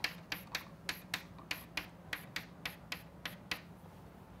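Chalk tapping on a chalkboard in a quick series of short sharp clicks, about five a second, as small marks are drawn; it stops about three and a half seconds in.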